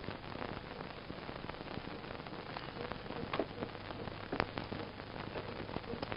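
Hiss and crackle from a worn film soundtrack, with a couple of faint clicks partway through.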